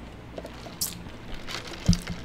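A large paper soda cup being handled and set down on the table: a few faint rustling noises and a short hiss about a second in, then a single dull thump near the end as the cup meets the table.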